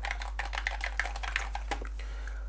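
Typing on a computer keyboard: a quick run of keystrokes, several a second, that stops just before the end.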